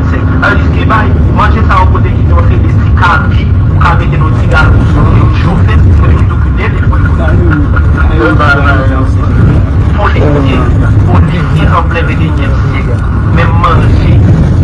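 Speech: a person talking without pause over a loud, steady low rumble.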